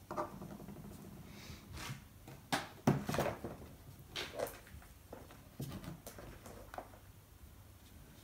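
Playmobil plastic figures set down on a tabletop and a card scenery backdrop handled: a string of light knocks and rustles, the loudest about three seconds in.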